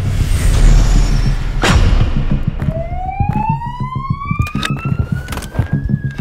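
A police siren winding up, one slowly rising wail that begins about halfway through. It plays over a deep low rumble in the first second, and a sharp hit comes just under two seconds in.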